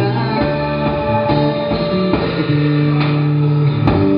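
Live rock band playing: electric guitar and bass guitar holding long notes over drums.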